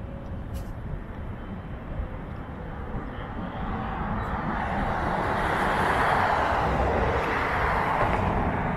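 A passing vehicle's noise, a broad rushing sound that swells from about three seconds in and stays loud.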